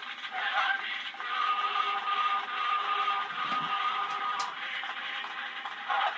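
A 1901 Edison Gold Molded wax cylinder plays a music recording through an Edison phonograph's horn. The sound is thin and band-limited, with surface hiss. A long note is held through the middle, and a click comes after it.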